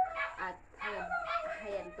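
Dogs whining in the background beneath a woman's talking.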